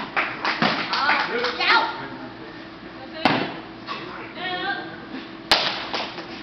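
Hand and foot strikes of a wushu tiger form: two loud sharp smacks about two seconds apart, the second the crispest, with brief voices in between.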